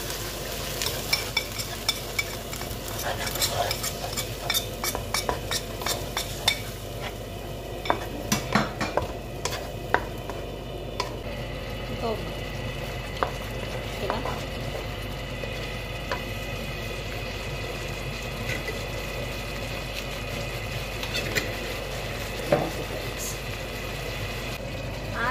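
Wooden spoon stirring a tomato sauce in a frying pan: scrapes and clicks of the spoon against the pan over a steady sizzle of the sauce frying. The spoon strokes come thick and fast over the first half, then thin out to a few knocks while the sizzle carries on.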